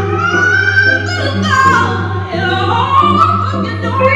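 A woman singing live through a microphone, holding long notes and sliding up and down in runs, over a steady low accompaniment.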